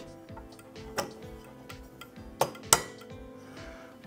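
Three sharp metallic clicks as die-cast metal model parts knock together while being fitted, the last and loudest about two and a half seconds in, over soft background music.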